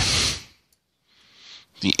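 A man speaking, finishing a word at the start and beginning the next one near the end. Between them is a short, faint hiss.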